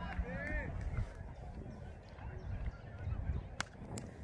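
Open-air background of faint distant voices over a low rumble. About three and a half seconds in comes a single sharp crack: a cricket bat striking the ball for a six.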